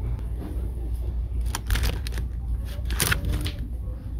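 Plastic packaging being handled: a few clicks and rustles, one cluster about one and a half seconds in and another near three seconds, over a steady low store hum.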